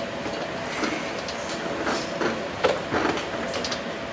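Steady room noise with a faint hum, broken by scattered short knocks and clicks.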